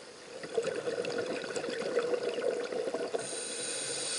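Scuba diver's exhaled air bubbles gurgling and crackling past the camera underwater, starting about half a second in and lasting a little over two seconds. A faint steady high whine follows near the end.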